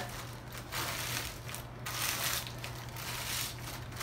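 Ritz crackers being crushed by hand on a cutting board, in an irregular series of short crunches.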